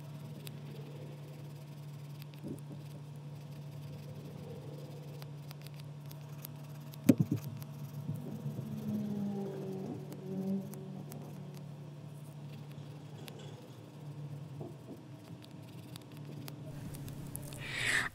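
Faint scratching of a small emery mini nail file rubbed over a short natural fingernail, over a steady low hum, with one sharp knock about seven seconds in.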